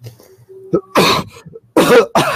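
A person coughing: one cough about a second in and another near the end.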